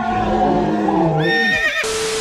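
A long, shrill, wavering laughing cry that glides down in pitch near its end, much like a horse's whinny. It is cut off by a short burst of TV-static hiss with a steady hum, the sound of a video glitch transition.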